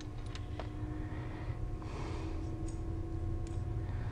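A few faint, light clicks of metal valve-train parts being handled as a loose rocker arm is worked out of the cylinder head, over a steady low hum.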